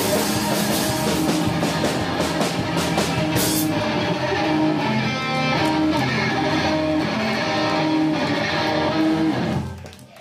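Rock band playing live: electric guitar with drums and cymbals for the first four seconds, then guitar ringing on without drums until the song stops abruptly near the end.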